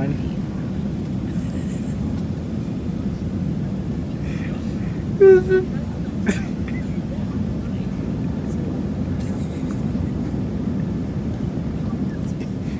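Steady low rumble of airliner cabin noise, even throughout. A brief voice sound comes about five seconds in.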